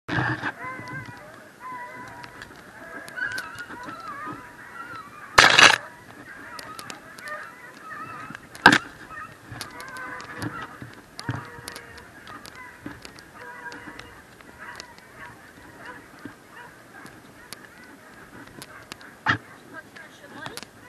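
Pack of scent hounds baying on a hare's trail, with many overlapping wavering cries. A loud burst of noise comes about five seconds in, and sharp cracks near nine seconds and just before the end.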